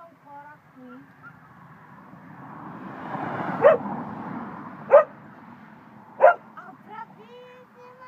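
A dog barks three times, evenly spaced about a second and a half apart, over a swell of rustling noise. Short high-pitched whimpering calls follow near the end.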